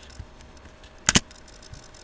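Two quick sharp clicks about a second in, a computer pointer button being pressed to open a link, over faint steady room noise.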